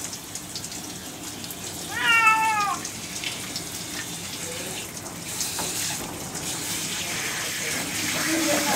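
A cat meows once, a single falling call just under a second long about two seconds in. Underneath it is the steady hiss of water from a hand-held spray nozzle rinsing dish-soap lather out of its wet coat.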